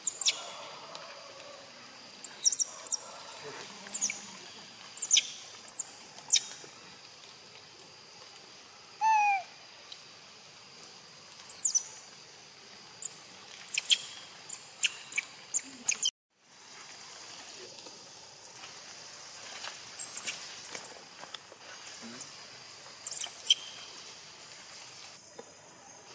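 Baby macaque giving short, high-pitched squeaking cries, scattered one after another, with a lower falling call about nine seconds in.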